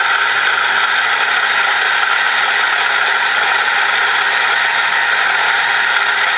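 Nuova Simonelli Grinta electric coffee grinder running steadily, its burrs grinding espresso beans into a portafilter at a grind set too coarse.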